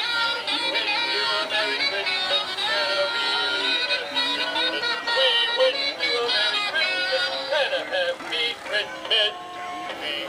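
Battery-operated animated Santa Claus figurines playing recorded Christmas songs with singing, more than one tune going at once.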